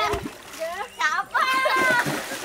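Children splashing in shallow river water and calling out. A splash comes right at the start, and one long, high cry is held through the second half.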